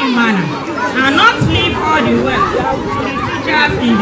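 Speech only: voices talking, with chatter of several people.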